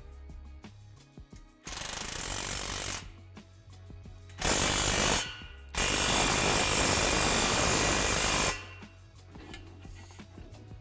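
Cordless impact driver tightening a bolt through steel tube brackets. It runs in three bursts: a short, softer one about two seconds in, then two loud runs, the last about three seconds long. Background music with a steady beat plays underneath.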